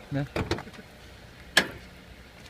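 Mazda 6 hood latch letting go: a single sharp metallic clunk about one and a half seconds in.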